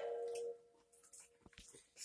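A short steady hum-like tone in the first half second, then faint small clicks and squishy sucking noises from children drinking from feeding bottles.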